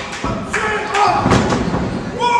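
A couple of heavy thuds as a wrestler's body hits the ring mat, with spectators shouting over them.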